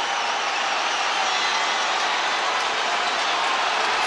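Arena crowd cheering steadily through a hockey fight, an even wash of many voices with no single call standing out.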